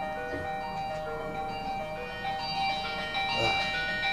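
Background music: a slow melody of long held notes, several sounding together.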